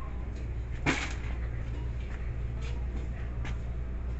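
Shop-floor background of a steady low hum, with one sharp knock about a second in and a few fainter clicks later: the clatter of workers stocking shelves.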